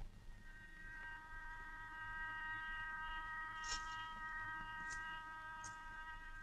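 Faint background film score: a soft chord of several high notes enters about half a second in and is held, with a few light high tinkles over it.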